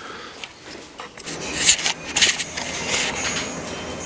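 Handling noise from the camera being carried and turned in the hand: irregular rubbing and scraping against the body and microphone, with a few louder scrapes about two seconds in.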